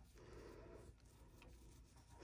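Near silence, with faint soft rubbing from a small brush dabbing gold mica powder onto cured UV resin.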